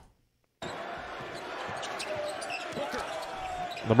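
Basketball game broadcast audio starting suddenly about half a second in: steady arena crowd noise with a ball being dribbled on the hardwood court.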